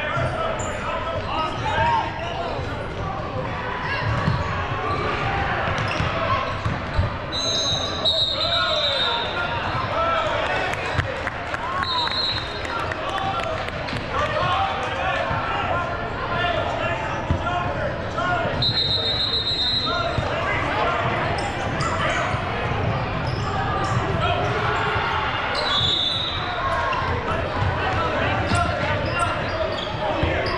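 Basketball game in a large, echoing gym: the ball bouncing on the hardwood court under a steady murmur of indistinct voices from players and spectators, with a few brief high squeaks.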